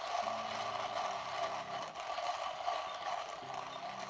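Comandante C40 Mk3 Nitro Blade hand coffee grinder being cranked at a steady pace, its stainless steel burrs grinding lightly roasted beans in a continuous even grinding sound. The crank turns smoothly with no slipping.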